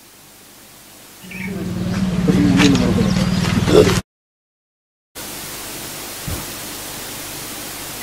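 Steady background noise of a field recording: a low electrical hum with faint voices under it, then a sudden cut to dead silence for about a second, followed by an even hiss.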